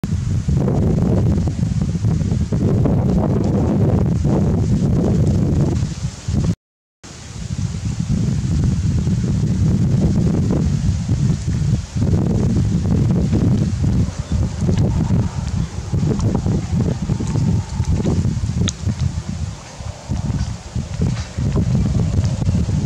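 Wind buffeting the microphone, a loud low rumble, with leaves rustling. It drops out for about half a second some six and a half seconds in.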